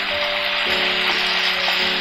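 Soft background music of long held notes over the steady sizzle of beef stir-frying in a wok with chilli paste; the sizzle cuts off sharply at the end.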